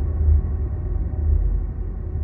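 Deep, sustained low rumble of a logo intro's sound effect, the tail of a musical whoosh sting.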